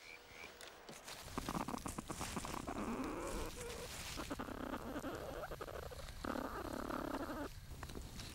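Platypuses moving about inside their nesting chamber: rustling and scratching in the dry leaves and sticks of the nest, with a few brief animal calls.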